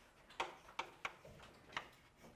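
Chalk tapping against a chalkboard as characters are written: four sharp, short clicks, irregularly spaced.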